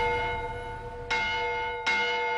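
Bronze church bells ringing in a belfry: two strikes, about a second in and near the end, each ringing on and slowly fading.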